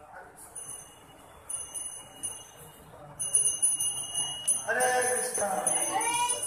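A small metal hand bell rung rapidly and continuously. It starts softly in pulses about half a second in and rings steadily from about three seconds on. Voices join near the end.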